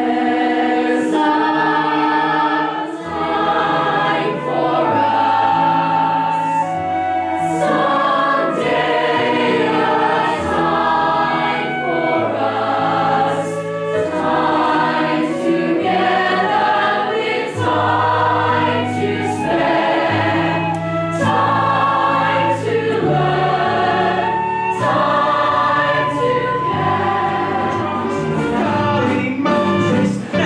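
A choir singing a slow song with instrumental accompaniment, sustained notes over a bass line that steps to a new note every second or two.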